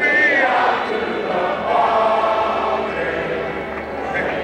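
A group of voices singing together in long held notes, choir-like, as soundtrack music.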